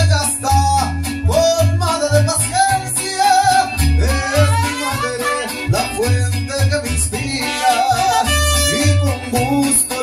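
Mariachi band playing a song with singing, strummed guitars and a deep plucked bass line keeping a steady rhythm.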